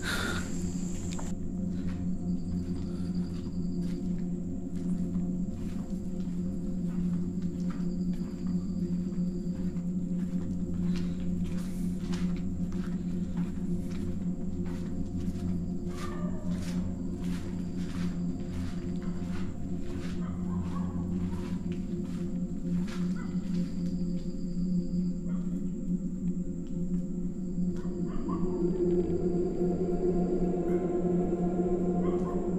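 A steady, eerie low electronic drone with several even tones, a thin high whine over it, short high beeps that come and go, and many faint scattered clicks.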